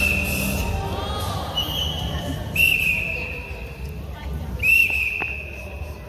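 A whistle blown in about four single-pitch blasts, three of them lasting about a second each, spaced a second or so apart. Music breaks off just at the start.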